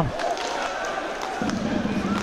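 Ice hockey arena sound during play: crowd noise with a few sharp knocks of sticks and puck around the goal.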